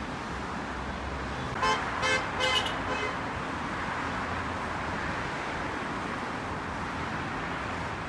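Steady road traffic noise from a busy road below, with a vehicle horn giving several short toots in quick succession about a second and a half in.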